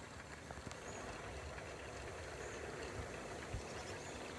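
Faint, steady rumble of wind in the open air around a small homebuilt wind turbine turning in a light breeze of about 12 mph.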